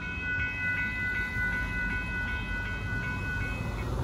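Railroad grade crossing warning bell ringing in a steady, rapid pulse of about three strokes a second, falling silent just before the end, over the low rumble of a slow freight train at the crossing.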